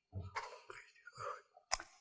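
Soft, breathy, half-whispered murmuring from a woman's voice in a pause between phrases, with a short sharp sound near the end just before full speech resumes.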